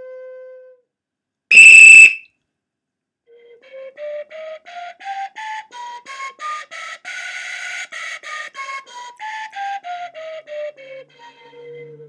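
A recorder-type Flûte Multigammes: a held note dies away, then a short, very loud, shrill whistle blast comes about two seconds in. After a pause the flute plays a slow tongued scale of separate breathy notes, rising about an octave and then stepping back down.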